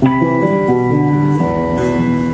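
Acoustic guitar played: a chord struck sharply at the start rings on while the lower notes change a few times.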